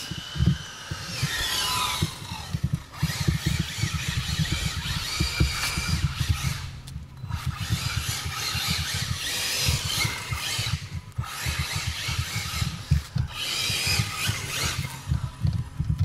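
ARRMA Infraction 6S RC car's brushless motor whining up and down in pitch with the throttle, with tyre squeal on asphalt as it drifts. It is run flat out with its cooling fans off, its ESC hot enough to go into thermal shutdown.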